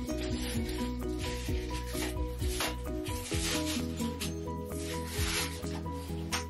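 Hand scrubbing the inside of a claw-foot bathtub with a gloved hand and pad, quick repeated rubbing strokes about two or three a second, as the tub is washed before reglazing, over background music.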